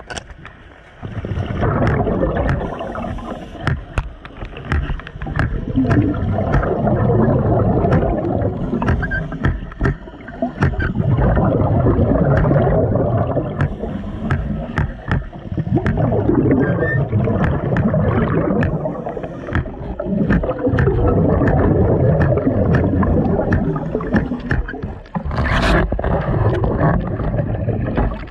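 Scuba regulator exhaust bubbles rushing past underwater in long bursts, one with each exhaled breath, every four to five seconds, with short lulls for the inhalations between. Sharp clicks are scattered throughout.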